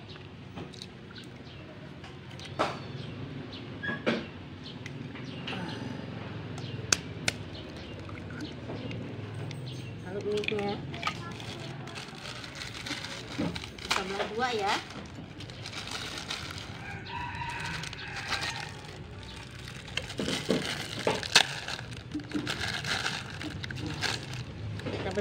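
A knife blade cracking eggshells, with a few sharp clicks in the first several seconds, as eggs are broken into a pot of simmering chili broth. A steady low hum from the gas burner runs underneath.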